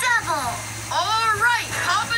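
Cartoon dialogue played from a television: a high-pitched, child-like character voice calling out two short lines, heard through the TV's speaker with a steady low hum underneath.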